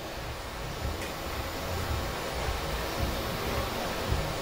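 Steady low hiss and rumble of a quiet tournament hall while three-cushion billiard balls roll after a shot, with one faint click about a second in.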